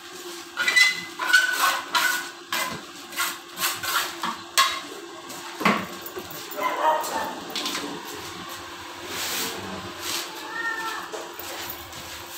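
A trowel scraping and knocking in a plastic bucket of cement mortar being mixed, a quick run of clacks over the first five seconds. A pet animal gives a few short whining calls around the middle and near the end.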